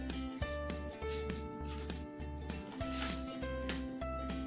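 Background music: sustained notes that step from one pitch to another over a regularly pulsing bass beat.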